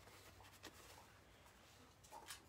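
Near silence: room tone, with one faint click about two-thirds of a second in.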